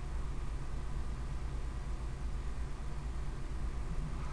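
Steady low hum and faint hiss of room tone, with no distinct handling sounds; the hand pinching of soft clay makes no clear sound.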